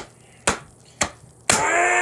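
Four sharp smacks about half a second apart, then a man's long, drawn-out yell beginning about a second and a half in.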